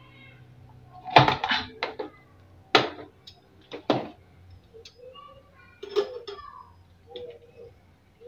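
Hinged metal hand citrus squeezer clicking and knocking against a cup as citrus halves are pressed: a few sharp clacks, scattered and irregular.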